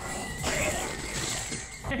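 Cartoon sound effects from the episode: a high, steady whining tone that wavers near the end, joined by a rushing whoosh from about half a second in.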